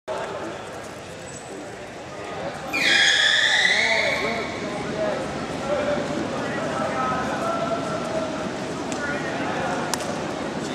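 One whistle blast about three seconds in, dipping slightly in pitch and then held for about a second and a half, over a steady murmur of voices.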